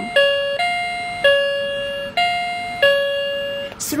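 Electronic two-tone ding-dong doorbell chime from a wireless alarm panel's speaker, set off by the wireless doorbell button. About five notes alternate between a higher and a lower pitch, each struck sharply and fading, and the chime stops just before the end.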